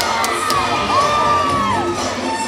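Routine dance music with its bass thinned out, under spectators whooping and cheering with a few drawn-out yells that rise, hold and fall away.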